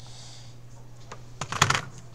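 Computer keyboard keys clacking in a quick burst about a second and a half in, after a single faint click, over a low steady hum.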